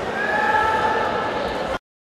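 Crowd noise and voices, with one long high-pitched call held for about a second, then an abrupt cut to silence near the end.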